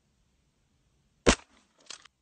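A single rifle shot, one loud sharp crack about a second in, fired at two deer's locked antlers to break them apart. A fainter sharp crack follows about half a second later.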